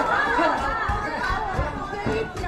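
Speech only: several voices talking over one another, with hurried calls of 'quick'.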